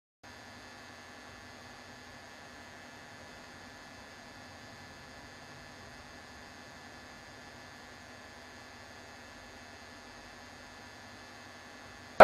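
Faint steady electrical hum over a light hiss, unchanging throughout, starting just after a split second of dead silence.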